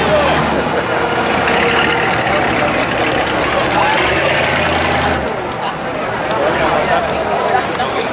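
Spectators talking over the low, steady hum of a large classic American car's engine rolling slowly past, strongest near the start and again around the middle.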